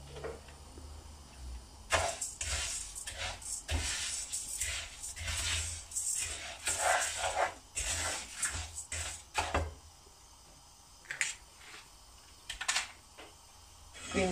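Dry raw rice grains stirred with a spoon in a non-stick frying pan as they toast without any fat: several seconds of irregular rustling, scraping strokes, then quieter with two light clicks near the end.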